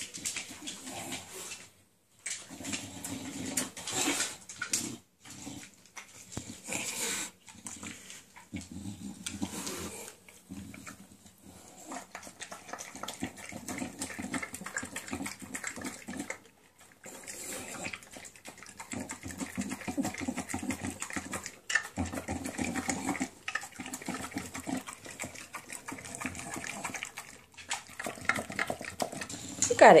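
English bulldog eating raw minced meat from a stainless steel bowl: wet chewing and slurping noises in irregular bursts, broken by several short pauses.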